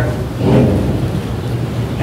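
A low, steady rumble of background noise, with a brief faint voice-like sound about half a second in.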